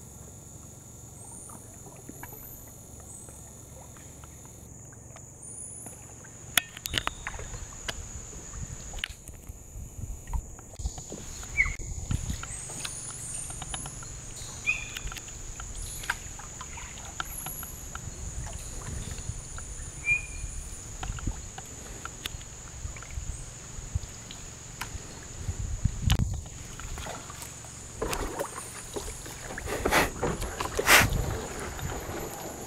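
Rainforest ambience: a steady high-pitched insect drone with short, high bird chirps scattered over it. Irregular knocks and low rumbles from the camera being handled come through throughout.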